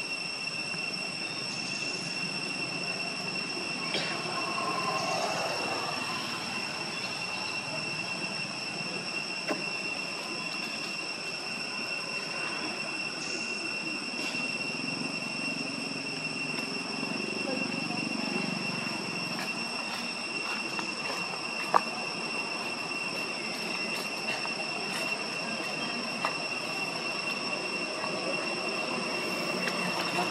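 A steady, high-pitched insect drone holding one unchanging tone with an overtone above it. A few faint clicks sound over it, with one sharp click about two-thirds of the way through.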